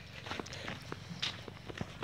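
Footsteps on a dirt and grass footpath: soft, irregular scuffs and small clicks, fairly quiet.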